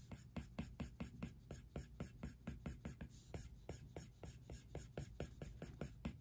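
Apple Pencil 2nd generation tip scratching rapidly back and forth on an iPad Pro's glass screen while shading, a faint, even run of about six quick ticks a second.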